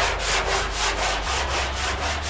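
Flexible body file scraping across the sheet-steel roof panel of a VW Beetle in quick, even strokes, filing the metal down to find and level the sunken spots in the roof.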